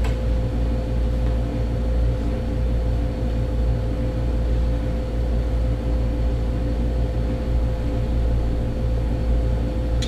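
Steady drone of a window air conditioner running: a constant low rumble with a steady hum tone over it, unchanging throughout.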